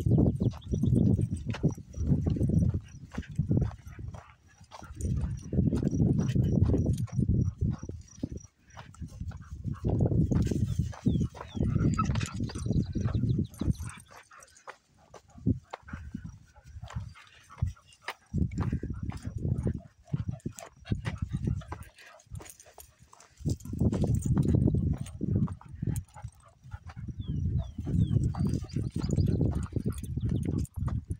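Footsteps on a dry dirt trail, with wind gusting on the microphone in low rumbling bursts of a few seconds at a time.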